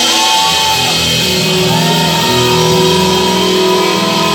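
Live band music played loud over a stage sound system, with held notes and a steady full sound.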